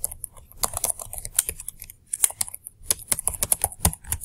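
Typing on a computer keyboard: a quick run of keystrokes with a brief pause about halfway through.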